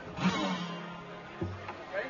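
Guitar notes being picked: a low note rings for about a second, then a lower note is struck, with a short laugh over the first.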